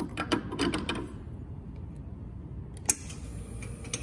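Stainless-steel portafilter being fitted and twisted into an espresso machine's group head: a quick run of metal clicks and scrapes in the first second. A single sharp click follows near three seconds, then a faint hiss sets in.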